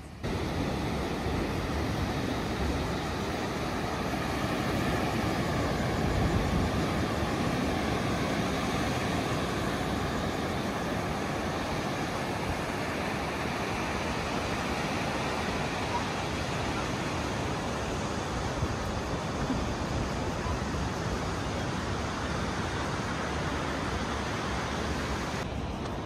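Steady rushing of surf breaking and washing up a sandy beach, swelling slightly a few seconds in.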